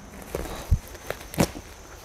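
Woven plastic sack being handled: a few sharp crinkles and knocks, with a dull thump about three quarters of a second in and a crisp crackle about a second and a half in.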